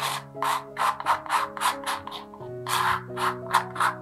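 Metal palette knife scraping and spreading acrylic paint across a stretched canvas in quick repeated strokes, about three a second, with a short pause a little past halfway.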